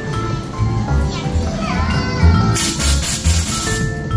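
Background music with a steady beat, over children's voices. About two and a half seconds in, a loud rushing hiss lasts just over a second.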